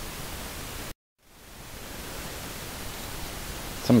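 Steady hiss of a voice recording's background noise between narrated sentences; it cuts out to dead silence about a second in, then fades back up.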